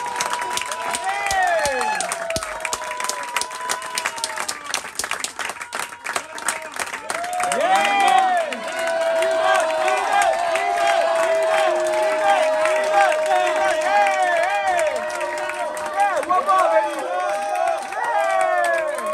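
Audience applauding and cheering, with many shouts and whoops over steady clapping; the cheering grows louder about eight seconds in, and one long note is held through the middle.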